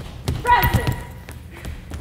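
Running footsteps thumping on a hollow wooden stage floor, with a shouted call over them about half a second in.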